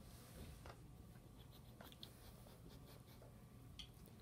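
Near silence: quiet room tone with a few faint, brief clicks.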